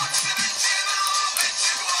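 Music playing through a small speaker, thin and without bass, with a Furby's high electronic voice singing along.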